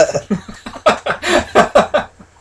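Men laughing together, in a quick run of short 'ha-ha' pulses through the second half.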